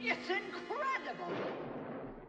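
A cartoon villainess laughing, a string of swooping 'ha' sounds that start suddenly, over a steady low held tone that stops partway through.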